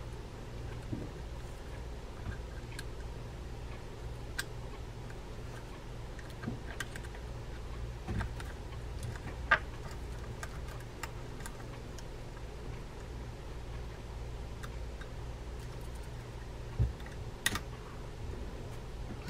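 Sparse, light clicks and ticks of a metal pick and small reel parts against a metal reel plate as a popped-off spring is worked back onto its post, over a steady low hum. The loudest click comes about halfway through.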